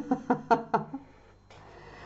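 Felt-tip marker drawing on graph paper: a few quick scratching strokes in the first second.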